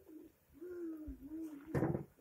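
A pigeon cooing: one drawn-out, wavering coo lasting about a second, followed by a short louder sound near the end.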